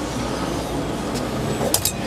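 Steady background noise of an industrial recycling yard, with a few short clicks near the end.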